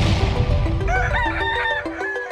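A rooster crows once, starting about a second in. Under it, the rumble of an explosion sound effect fades out, and a light plucked-note jingle plays.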